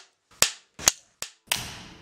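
Film clapperboards snapping shut: four sharp wooden claps in quick succession, the last one trailing off more slowly.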